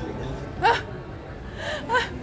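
A man's short, surprised exclamation "Ah!" about half a second in, followed by another short vocal outburst near the end.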